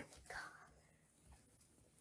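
Near silence: room tone, with a faint breathy, whispered sound in the first half second.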